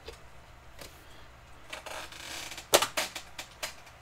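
Marker pen stroking on a sealed card box, a soft scratchy hiss about two seconds in. It is followed by a quick run of sharp clicks and taps lasting about a second.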